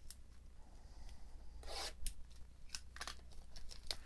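Faint tearing and rubbing as a trading card box is opened: a few short swishes of torn wrapping and cardboard being handled, with light clicks.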